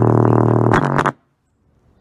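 JBL Xtreme Bluetooth speaker blasting a deep, buzzing bass drone with a few crackles. About a second in it cuts out suddenly, the speaker giving out under the load.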